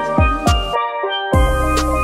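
Steel pan playing a melody over a backing track of drums and deep bass. Early on, two bass notes slide downward. Near the middle the beat drops out for about half a second, then comes back with a heavy, sustained bass.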